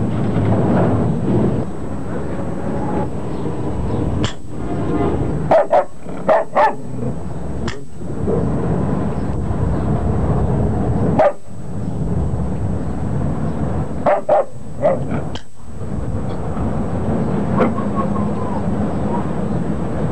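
Short, sharp animal calls over a steady background noise: single calls and quick runs of three or four, about a dozen in all, bunched in the middle of the stretch.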